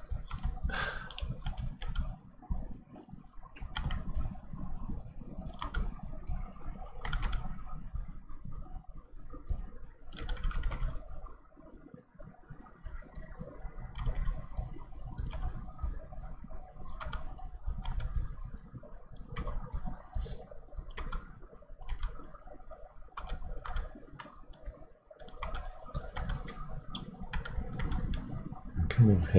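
Irregular clicking and tapping from drawing with a stylus on a Wacom Intuos Pro pen tablet, several clicks a second with short pauses, as sketch lines are laid down.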